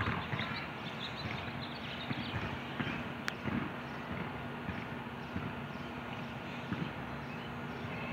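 Outdoor ambience: a steady background hum with scattered faint chirps and light knocks, and one sharp click about three seconds in.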